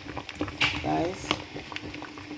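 Thick okra and ogbono soup simmering in a metal pot, with a wooden spoon stirring it: wet squelching and bubbling, with short clicks of the spoon against the pot. A brief voice sound comes about a second in.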